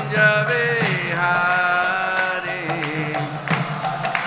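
A devotional mantra chanted in long, melodic held notes that glide from pitch to pitch, over a steady low accompaniment. A few sharp percussion strikes come in near the end.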